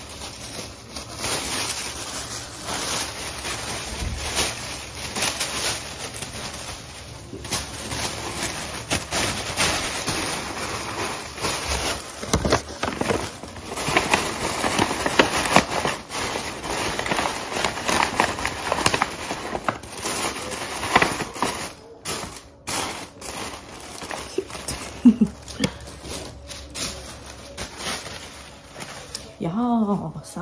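Tissue paper rustling and crackling as it is handled and stuffed into paper gift bags.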